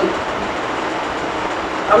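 Steady, even background noise filling a short pause in a man's speech, his voice ending at the very start and resuming near the end.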